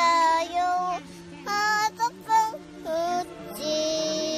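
A young child singing a melody in short phrases with a few held notes, over background music.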